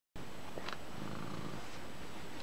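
Domestic cat purring steadily and softly close to the microphone.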